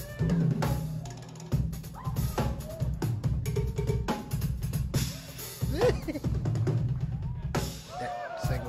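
Drum kit played fast in a live drum solo: rapid bass drum, snare and tom strokes with cymbals, in dense unbroken runs.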